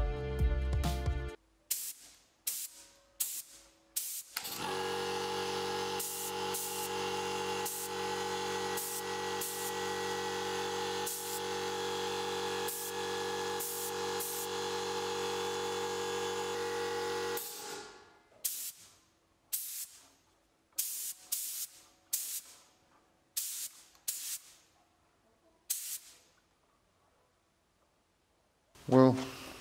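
Gravity-feed spray gun spraying primer for bare plastic in short hissing bursts, one trigger pull after another. From about four seconds in to about seventeen seconds a piston air compressor runs steadily underneath, keeping up the air supply.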